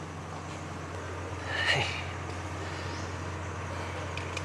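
Steady low background rumble with one brief, sharper sound about one and a half seconds in.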